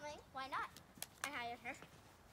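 A child's voice making short high-pitched vocal sounds without clear words, in several brief bursts, with one sharp click about a second in.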